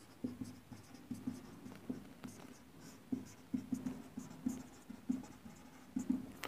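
Marker pen writing on a whiteboard: a quiet run of short strokes.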